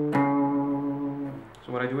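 Fender CD60E steel-string acoustic guitar: a single low note plucked just after the start and left to ring, slowly fading. A man's voice starts near the end.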